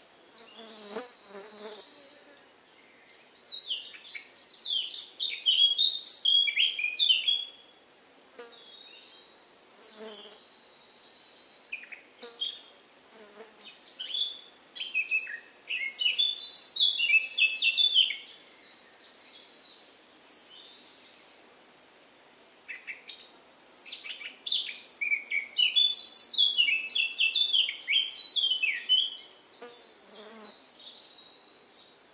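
A songbird singing in three long bouts of rapid, varied, high-pitched chattering notes, with quiet gaps between them.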